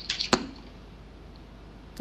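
A brief hiss and one sharp click about a third of a second in, followed by a low steady hum.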